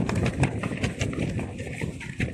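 Black ripstop polyamide parachute cargo trousers rustling and crinkling as the wearer shifts their legs: a dense, irregular run of crisp swishes.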